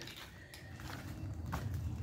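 Faint low rumble that builds toward the end, with a light click about a second and a half in: a toy monster truck's plastic wheels rolling down an orange plastic toy track.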